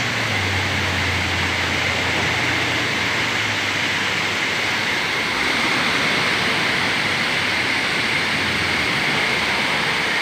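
Large man-made waterfall pouring down a rock face: a loud, steady rush of falling water.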